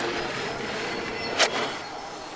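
Snowboard sliding over packed snow on the approach to a big jump, a steady scraping rush, with one sharp snap about a second and a half in as the board pops off the lip.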